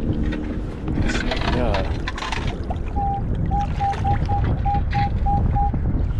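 Metal detector target tone: a run of short beeps at one steady pitch, about three a second, starting about halfway through, over the low rush of water and wind on the microphone. It is the signal of a strong target reading around 33, which the detectorist says is usually silver.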